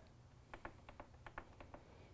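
Near silence with several faint, short ticks from fingertips pressing the Gaggia Babila espresso machine's control-panel buttons, the button beep switched off.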